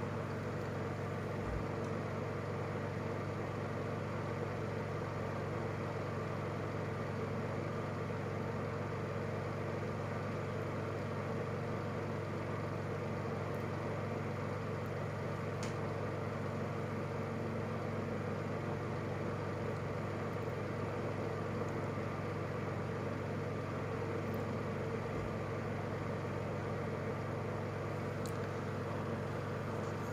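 A steady mechanical hum made of several constant tones, unchanging in level.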